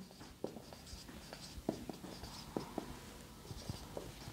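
Marker pen writing on a whiteboard: faint, irregular light taps and squeaky strokes of the felt tip as characters are written.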